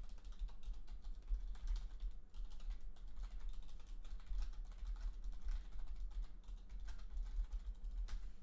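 Typing on a computer keyboard: a continuous run of irregular key clicks.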